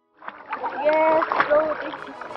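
Water splashing around people floating in life jackets, with a short voice sound about a second in.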